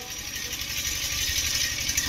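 A small engine running steadily with a fast, even low rattle, under a steady hiss of open-air background noise.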